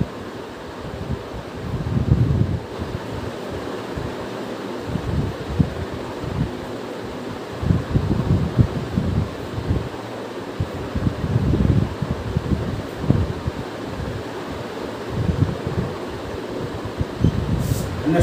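Steady rushing air noise, like a room fan, with irregular low gusts buffeting the microphone every few seconds.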